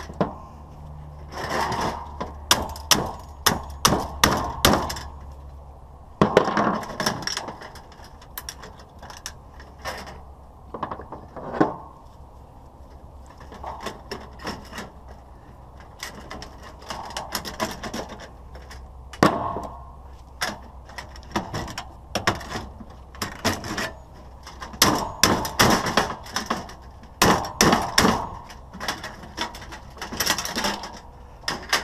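Hand tools and a hammer knocking and prying the lamp sockets off a fluorescent light fixture's sheet-metal housing: irregular runs of sharp knocks and cracks, with short pauses between the bouts.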